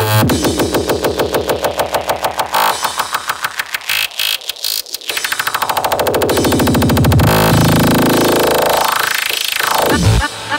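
Electronic hardcore (J-core) dance music in a build-up. Fast stuttering repeated hits speed up until they blur into a continuous buzz, and a sweeping riser rises and falls near the end before the beat comes back in.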